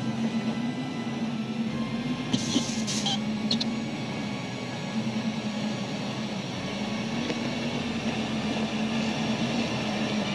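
Film soundtrack ambience: a steady low drone over background noise, with a brief hiss about two and a half seconds in.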